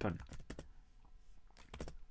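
Typing on a computer keyboard: a few quick keystrokes just after the start, then a short cluster of keystrokes near the end.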